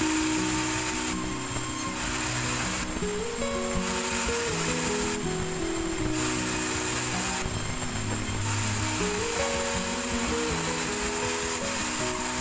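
Background music with a stepped melody laid over the steady running of a sawmill band saw. The saw's cutting noise swells and fades about every one to two seconds as timber is fed through the blade.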